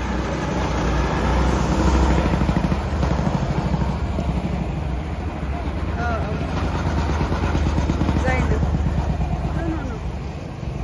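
Go-kart engines running as karts drive past on the track. The sound swells twice, about two seconds in and again near the end, as karts come close.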